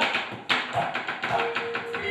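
A dalang's rapid knocking with the cempala mallet and keprak plates on the wooden puppet chest (kotak), a sharp knock followed by a quick run of taps, cueing the gamelan. Near the end, the gamelan's metal keys come in with held ringing tones.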